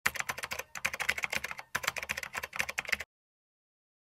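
Rapid typing on a computer keyboard: a quick run of keystroke clicks lasting about three seconds, broken by two short pauses, then stopping, used as the sound of on-screen text being typed out.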